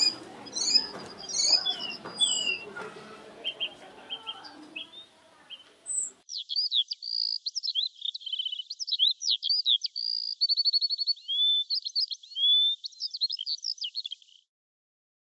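Songbirds chirping and singing: many short high chirps, quick slides and rapid trills. About six seconds in, the low background noise under them drops away and only the birdsong continues.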